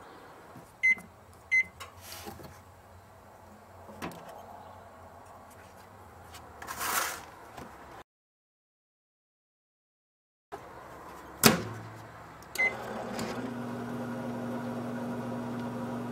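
Microwave oven keypad beeping twice, a short hiss as a match is struck, then a sharp clunk of the door shutting, another beep, and the oven starting up with a steady electrical hum.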